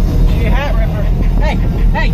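Deep bass played loud through two 24-inch Sundown Audio Team Neo subwoofers, heard inside the Jeep's cabin, with a voice over it.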